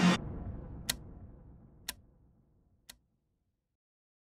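The broadcast sound cuts off and a low rumble dies away over about two seconds. Three sharp ticks sound one second apart, each fainter than the last.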